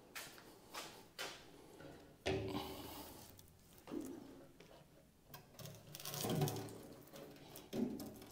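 Faint, scattered knocks and rustles of handling in a small room, with a short spoken word a couple of seconds in.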